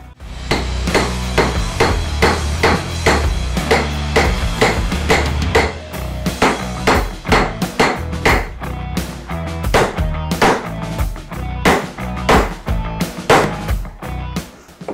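Hammer striking a steel masonry chisel held on a concrete retaining-wall paver: a steady run of sharp blows, about two or three a second, driving the chisel until the block splits in half.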